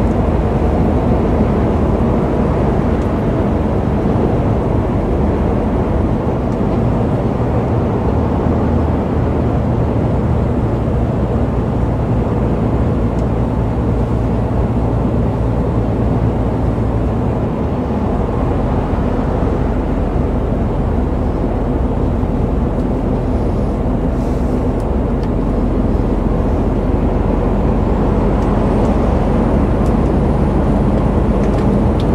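Inside the cab of a Mercedes-Benz truck cruising on a motorway: a steady low engine drone with road and tyre noise. The engine note shifts about eighteen seconds in.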